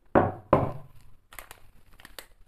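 Glass mixing bowl set down on a wooden cutting board: two loud knocks about a third of a second apart, each ringing briefly, then a few faint clicks.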